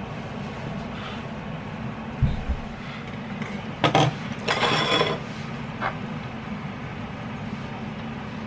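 Knife and wooden cutting board handled on a kitchen counter: a dull thump, a couple of sharp knocks and a short scrape of wood over the counter, over a steady low hum.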